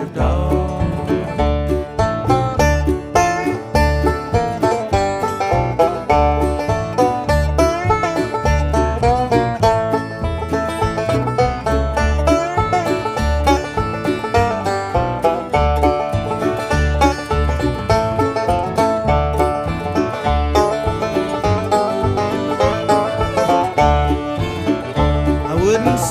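Instrumental break of an acoustic bluegrass string band: banjo, mandolin and guitar picking quick notes over a steady bass beat, with no singing.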